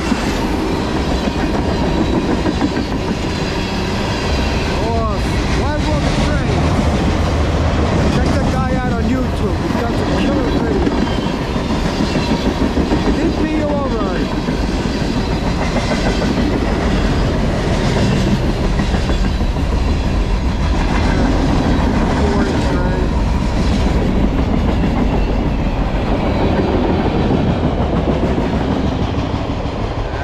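Freight train of tank cars and gondolas rolling past close by: a steady rumble of wheels clicking over the rail joints, with a few brief squeals from the wheels. The sound eases a little near the end as the rear of the train passes.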